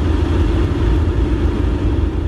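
Loud, steady, deep rumbling noise with no voices in it.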